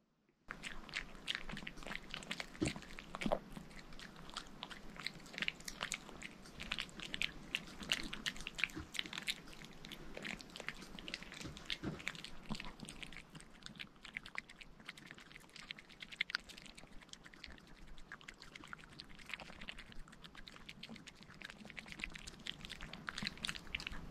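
Maltese dog gnawing a dog chew stick: a continuous run of irregular crunches and teeth clicks, starting about half a second in.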